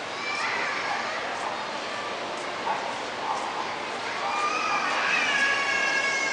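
Hubbub of a busy indoor public space: scattered, indistinct voices echoing in the hall, with high-pitched voices calling out, louder in the second half.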